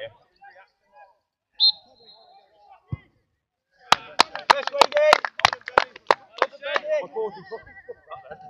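A short referee's whistle blast, then the dull thud of a football being kicked for a penalty about a second later. Straight after, someone near the microphone claps about ten times, mixed with men shouting and laughing.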